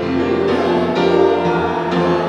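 A group of voices singing a hymn, with instrumental accompaniment, in slow sustained notes.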